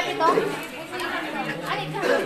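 People talking at the same time: chatter.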